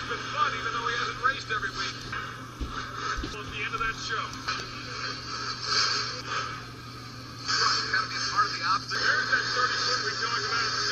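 Television broadcast audio of a monster truck freestyle, picked up from the TV's speaker: indistinct commentary mixed with music, over a steady low hum. It dips briefly and then comes back louder about three-quarters of the way through.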